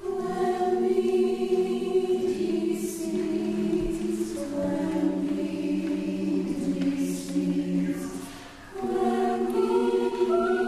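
Mixed choir singing in sustained chords, entering together at the start, easing off for a moment about eight and a half seconds in, then coming back in together.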